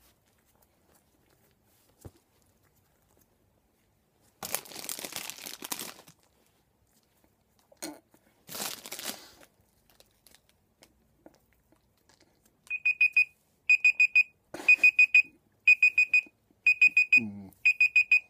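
Timer alarm beeping: short bursts of quick high beeps about once a second, starting about two-thirds of the way in, marking the end of the 30-second countdown. Earlier there are two short noisy bursts, and near the end a brief low, falling sound.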